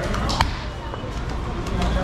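Tandoori roti dough being slapped and patted flat by hand on a cloth pad: a few sharp slaps, the loudest about half a second in. Background voices and a low steady hum run underneath.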